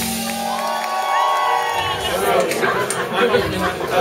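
A live band's last chord dies away, followed by audience chatter and voices calling out between songs, with a few stray sharp knocks from the stage.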